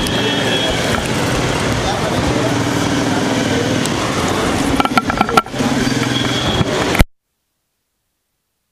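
Street traffic with motorcycles and scooters passing close by, over indistinct voices of people gathered at the roadside. The sound cuts off abruptly about seven seconds in.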